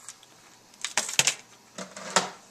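Crinkling and clicking of a small gift's packaging being handled, in two short bursts of sharp clicks, the louder about a second in.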